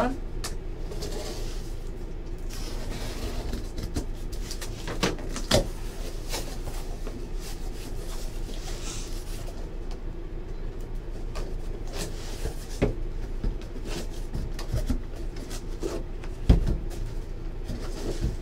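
Corrugated cardboard case opened by hand: the flaps are folded back and the boxes inside shifted, giving scattered scrapes, rustles and knocks over a steady low hum, with a dull thump near the end.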